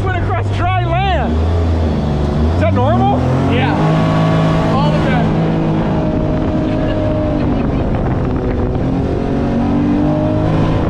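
Mini jet boat engine speeding up in steps over the first few seconds, then running steadily under way, over a constant rush of wind and water.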